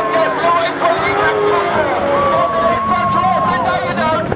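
Several speedway sidecar engines racing together, their pitches sliding up and down and overlapping as the outfits power through a bend.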